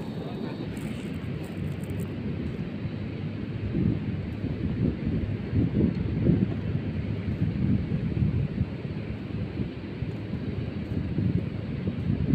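Wind buffeting the microphone, a low rumble that rises and falls in uneven gusts over a steady hiss.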